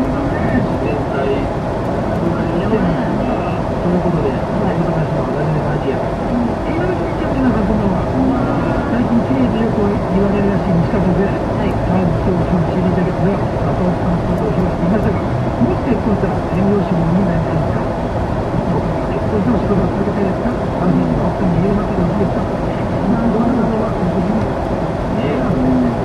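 Car cruising at highway speed heard from inside the cabin: steady road and engine noise, with muffled, low talking running underneath.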